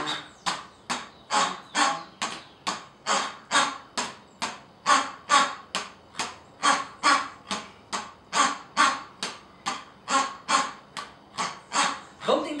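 Rubber squeeze-toy pigs squeezed in a steady beat, each squeeze giving a short raspy squeak, a little over two a second.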